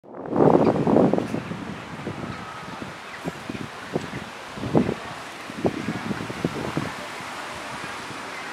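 Wind buffeting the microphone in irregular gusts over a steady outdoor hiss, loudest in the first second or so.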